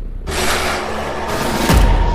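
Trailer sound design under a title card. A rushing whoosh swells about a quarter second in, then a second rush sweeps downward into a deep boom near the end, over a low steady rumble.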